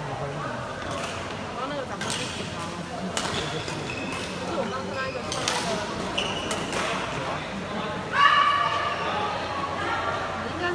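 Badminton rally in a gymnasium: rackets hitting the shuttlecock as sharp cracks and shoes squeaking on the court floor, over steady background chatter. About eight seconds in comes a loud voiced shout, the loudest sound, as the rally ends.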